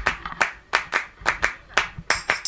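Rhythmic hand claps, about three a second, opening a music track laid over the footage.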